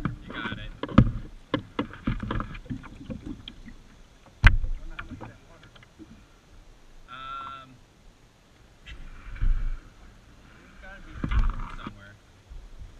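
Water splashing and sloshing, with scattered hollow knocks against plastic kayak hulls, as a capsized kayaker moves through shallow water with his boat. One sharp knock about four seconds in is the loudest sound.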